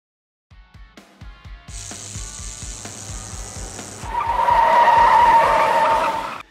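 Intro music over a fast, steady low beat. About four seconds in, a loud, sustained screeching sound effect comes in and holds until the music cuts off.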